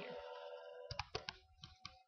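A computer mouse clicking several times in quick succession, starting about a second in.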